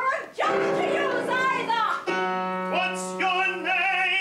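A woman singing operatically, with vibrato, over piano accompaniment; a held chord sounds under her voice from about halfway through.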